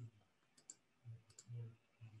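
A few faint computer keyboard clicks, with near silence between them.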